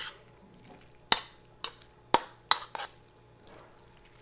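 A spoon knocking and scraping against a plastic mixing bowl while stirring seasoned raw fish pieces: about five short, sharp clacks, irregularly spaced, between one and three seconds in.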